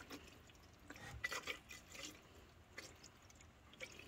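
Windshield washer fluid pouring from a plastic jug into a nearly empty plastic washer reservoir, a faint, uneven trickle and splash.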